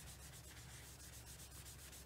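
Faint scratchy rubbing of a foam stamping sponge being wiped and dabbed across cardstock to blend ink onto the paper.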